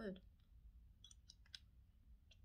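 Hard candy clicking faintly against the teeth in the mouth: a handful of quick, sharp clicks about a second in.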